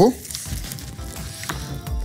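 A large spoon stirring cake batter in a ceramic bowl, a wet scraping and churning. This is the brief mix that follows adding the flour, kept short so the batter does not toughen.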